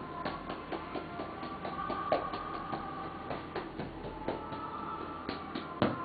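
Soft background music with many light, irregular clicks and taps from massage tools being handled and worked over a leg, and one louder knock near the end.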